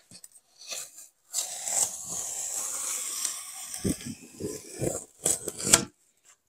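A small knife drawn through a 30 mm flame-retardant EPS polystyrene foam board along a scored line, giving a steady scraping hiss for a couple of seconds. It is followed by several short crackling sounds as the cut foam pieces are separated.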